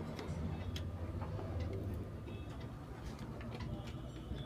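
Scattered light clicks and small taps of wires and small parts being handled against the metal chassis of an opened car cassette stereo, over a faint low hum.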